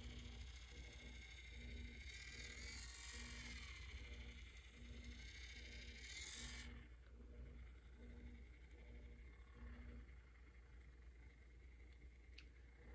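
Faint electric facial cleansing brush running against cleanser-covered skin: a low motor hum pulsing on and off about twice a second, with a soft scrubbing hiss from the bristles that fades about two-thirds of the way through.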